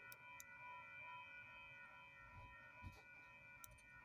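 Near silence, with faint steady high-pitched tones and a few soft ticks.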